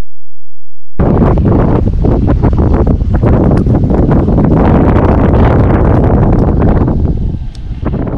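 Loud, gusty wind buffeting the camera microphone, fading out near the end.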